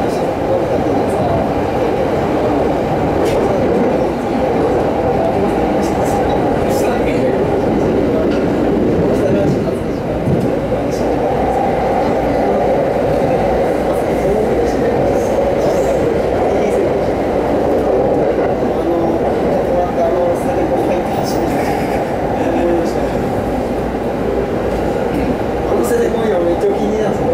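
Running noise of a Rinkai Line 70-000 series electric train heard from inside the carriage while under way: a steady rumble of wheels on rails, with a few faint ticks.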